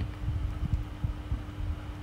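Irregular low thumps and rumble of a hand-held camera being moved, over a steady faint hum.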